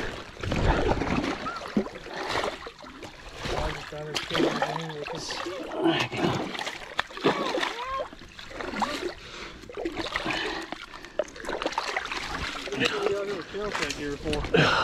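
A big catfish splashing in shallow water as it is hauled onto the muddy bank, loudest in the first second or so, with water sloshing around boots in the shallows.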